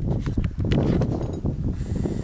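Close rustling and handling noise on a handheld camera's microphone, a dense low rumble broken by a few dull knocks.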